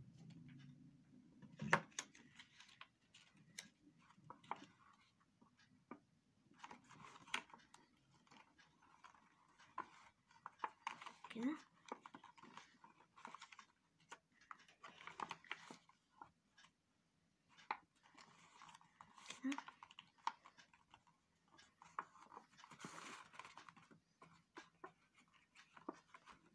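Faint paper-craft handling: a paper strip rustling and rubbing as it is glued and pressed onto paper cubes, with scattered small clicks and taps.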